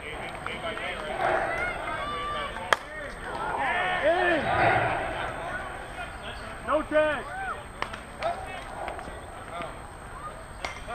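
A softball bat hits the pitched ball with a single sharp crack about three seconds in. Players then shout across the field in two loud bursts.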